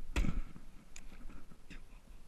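A bowfishing bow being shot: one sharp thump of the string release shortly after the start, then a few light clicks.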